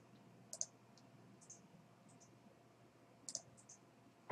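Computer mouse clicking in a quiet room: a few short, sharp clicks, some in quick pairs, about half a second in and again in a cluster past three seconds.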